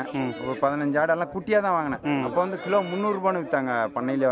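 Goats bleating under a man talking.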